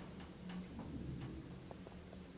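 Westinghouse hydraulic elevator car running, a faint low hum with a run of light, unevenly spaced ticks.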